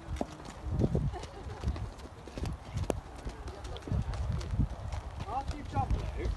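A horse's hooves clopping on hard ground: a string of irregular knocks and low thuds.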